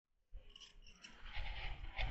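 A brief dead silence, then faint outdoor background noise fading in, with a few soft scuffs and rustles that grow a little louder toward the end.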